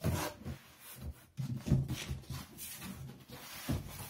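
A cardboard box being opened and handled: its flap pulled open, then cardboard rubbing and scraping with a few knocks, the loudest about a second and a half in.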